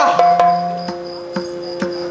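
Yakshagana accompaniment: pitched drum strokes from the maddale and chande, about two a second, over a steady drone, with small hand cymbals ringing a high, pulsing tone. About a second in, the drum's ringing pitch steps up.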